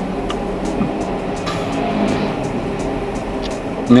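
Background music with a steady, light beat over a low, steady hum inside a car.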